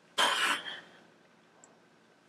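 A man's short, breathy mouth-made explosion sound, about half a second long, miming his mind being blown.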